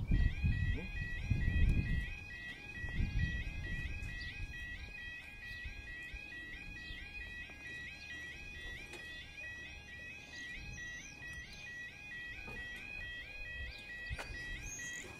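Level-crossing warning alarm: a UK yodel alarm sounding a repeating high warble as the road lights change from amber to red. It warns that the barriers are about to lower for an approaching train. A low rumble is loudest in the first few seconds.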